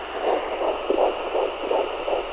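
Fetal heartbeat picked up by a handheld home fetal Doppler and played through its speaker: a quick, even train of whooshing beats, about three a second, over steady hiss.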